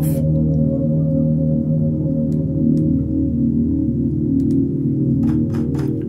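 ORBIT software synthesizer in Kontakt holding one sustained note on a patch built from a vocal sound: a low, droning pad of stacked steady tones that keeps shifting and morphing while the key is held. A few faint clicks sound over it.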